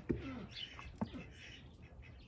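Chickens clucking faintly, with a single light knock about a second in.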